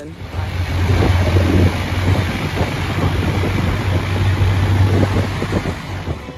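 Loud, steady wind rumble on the microphone over a running vehicle, as from a motorbike on the move.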